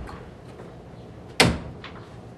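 Horse's hoof striking the floor of a step-up stock trailer: one loud bang with a short ring about one and a half seconds in, then a fainter knock just after.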